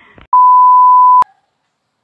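One loud electronic beep: a single steady pure tone held for just under a second, starting and stopping abruptly with a click.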